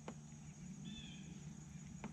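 Quiet lakeside ambience with a low steady hum, a single sharp click at the start and one short faint bird call about a second in.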